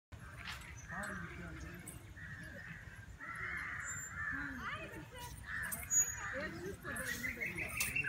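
Birds calling repeatedly over faint, distant voices.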